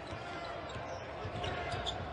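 Basketball being dribbled on a hardwood court, its bounces heard through the game broadcast's court sound.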